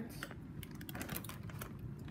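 Faint, irregular light clicks and rustling from handling a water-filled plastic zip bag with a pencil pushed through it.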